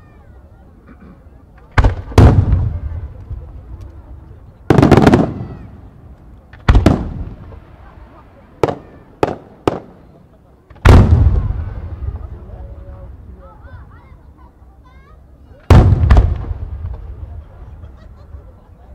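Japanese aerial firework shells bursting in a series of loud booms every few seconds, each rolling away in a long echoing rumble, with three short sharp cracks in quick succession about halfway through. Faint crowd voices between the bursts.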